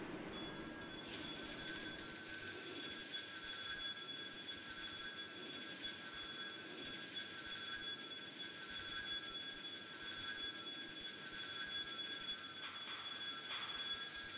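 Altar bells ringing continuously, a steady high-pitched jingling held for about fourteen seconds before fading out. They mark the elevation of the chalice just after the words of consecration at Mass.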